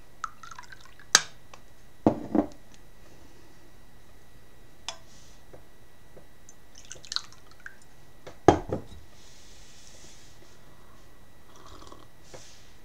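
Ceramic teacups being handled on a table: a scattering of sharp clinks and knocks, the loudest about one, two and eight and a half seconds in. A soft liquid hiss follows about nine seconds in as the brewed tea is readied for a sip.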